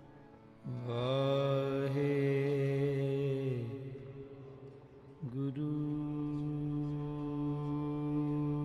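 A deep voice chants devotional long held notes. The first steady note starts about a second in and fades out near four seconds; a second long note begins a little after five seconds with a brief dip in pitch.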